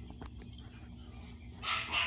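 A pause in speech: low steady room hum with two faint clicks in the first half second, then a person's breath drawn in near the end, just before speaking resumes.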